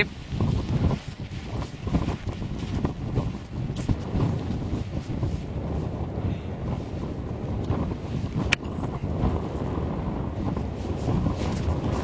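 Gusty wind buffeting the microphone with an uneven low rumble, and a single sharp click about eight and a half seconds in.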